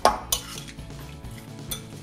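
A utensil clinking against a mixing bowl while raw chicken pieces are stirred with their seasoning, with three sharp clinks: one at the start, one a moment later and one near the end.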